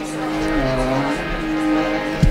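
Kirtan music: a harmonium and a voice holding slow, drawn-out notes that slide from one pitch to the next.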